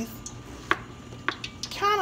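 Kitchen knife slicing through a yellow squash onto a plastic cutting board: three short, sharp taps as the blade meets the board.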